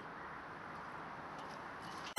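Faint, steady background hiss with no distinct sounds.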